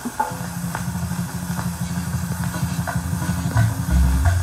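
Opening of a cumbia on a 78 rpm shellac record: a held, low buzzing note starts about a third of a second in over surface hiss. A click repeats about every three quarters of a second, once per turn of the disc. Heavier low beats come in near the end.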